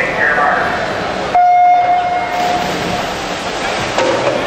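Electronic start signal of a swim race: one loud, steady beep a little over a second long, sounding about a second and a half in, over the echoing noise of the pool hall.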